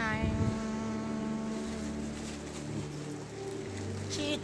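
Quiet background music of held low notes that change pitch every second or so, a drone-like bed with no voice over it.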